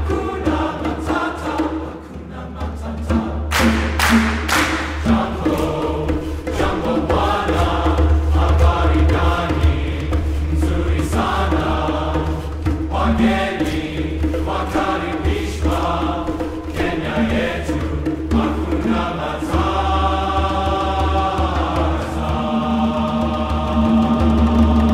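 A men's chorus singing a rhythmic piece in chords, accompanied by bongos, with a few sharp claps about four seconds in.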